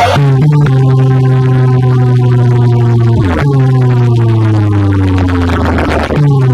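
Loud electronic bass drone from a DJ competition track: a deep buzzing held tone that sags slowly in pitch, then swoops down a little past halfway and starts again higher to sag once more.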